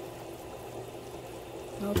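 Pot of chicken pelau (rice, pigeon peas and chicken in liquid) simmering on the stove, a steady, even sizzle and bubble with no stirring.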